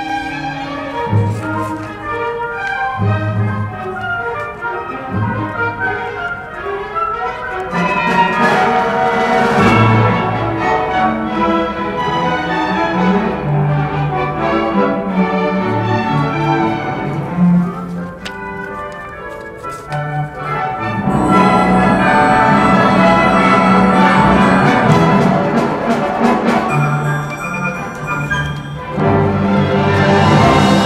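Symphony orchestra playing a fugue-like contrapuntal passage, with strings and brass. The music grows louder and fuller about two-thirds of the way through.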